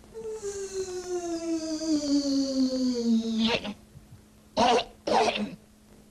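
A long tone sliding slowly down in pitch for about three and a half seconds, then two short coughs or throat-clearings.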